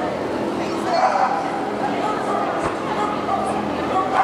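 A dog barking and yipping in short calls over the steady chatter of people in a large hall.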